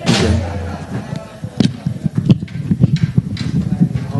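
A man's voice says "right, yeah, right", then a run of irregular thumps and knocks, several a second, some sharp and some dull.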